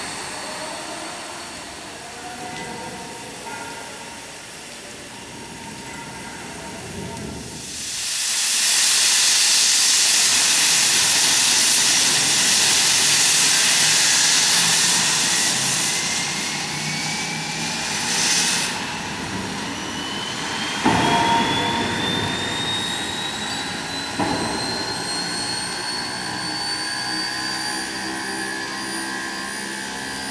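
Steam locomotive venting steam from its cylinder drain cocks: a loud hiss that starts about eight seconds in and lasts about ten seconds. A thin whine rises steadily in pitch through the second half, and there are two short clanks.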